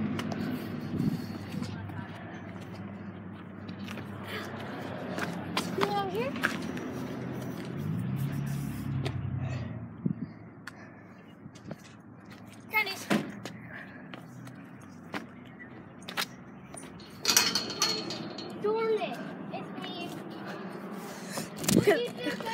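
Scattered faint children's calls and shouts with rubbing and knocking from a handheld camera being moved around. A low steady hum runs through the first half.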